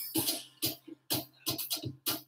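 Background music with a drum beat.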